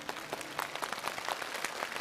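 Studio audience applauding: many hands clapping in a dense, irregular patter.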